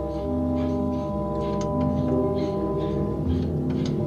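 Film score music: slow, sustained held tones that change pitch every second or so, with faint short high strokes over them.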